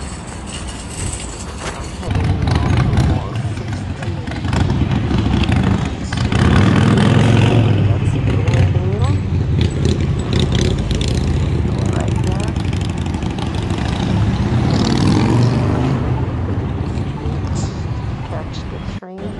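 City street traffic: vehicle engines running and passing close by, louder from about two seconds in, with a rising engine note near the middle as one pulls away.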